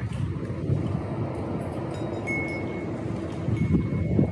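Gusty wind buffeting the microphone, a steady low rumble. A wind chime rings a single high note about two seconds in, and again near the end.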